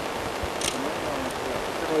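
Steady rushing noise with faint, quiet talk from people nearby, and a single brief click about two-thirds of a second in.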